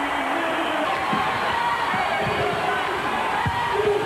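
Basketball arena crowd cheering after a home-team basket, a steady wash of many voices.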